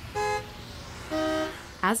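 Two short car horn beeps used as a sound effect: a brief, higher beep near the start, then a longer, lower beep a little past the middle.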